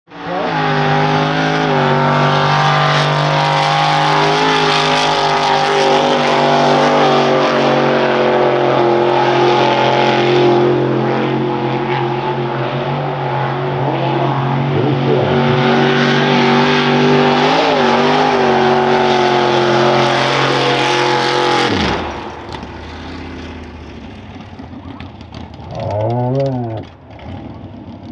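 Mud-racing pickup truck's engine held at high revs for a long run with small pitch wobbles, then the revs fall away suddenly about three quarters of the way through, followed by one short rev a few seconds later. The truck has bogged down and stopped, stuck deep enough to need a tractor to pull it out.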